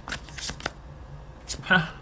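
Tarot cards being shuffled by hand: a quick run of short papery clicks in the first moments, then a pause and one more click, followed near the end by a short laugh.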